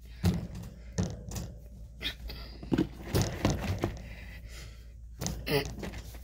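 Irregular thunks and knocks of a plastic guinea pig hideout and cage being bumped and shifted by hand, about eight or nine separate knocks with the sharpest one near the end.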